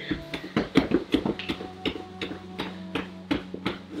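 Legs being shaken loosely while lying on a yoga mat: irregular soft taps and knocks, about three or four a second, from heels and legs against the mat and floor, with cloth rustle.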